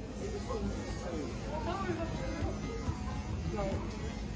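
Background music with several children's voices chattering over it.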